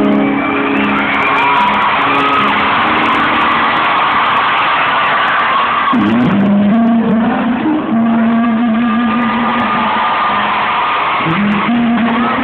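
A rock band playing live in an arena, with a man singing held notes with vibrato over the band from about halfway through.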